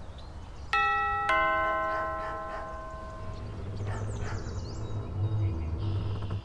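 Doorbell pressed, sounding a two-note ding-dong chime whose notes ring on and fade over a few seconds. A low rumble then builds up through the second half.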